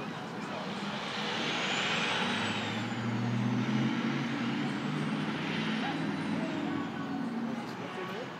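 A large vehicle going by: a low engine rumble with a broad noise that swells in the middle and eases off, and a faint high whine that rises and falls twice.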